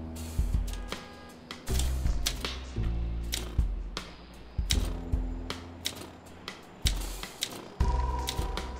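Olympia manual typewriter keys clacking in irregular strokes, over background music of low, held bass notes that come back every second or two.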